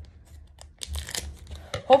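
Scissors cutting open the wrapper of a Pokémon trading-card booster pack, with the wrapper crinkling in a run of short crisp snips and rustles starting about halfway in.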